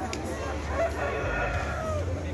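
A rooster crowing: one long crow starting about halfway through, falling slightly in pitch toward the end.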